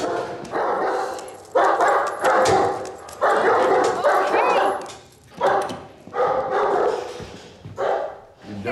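German shepherd barking repeatedly at close range, in about six loud bursts of up to a second each with short gaps between them.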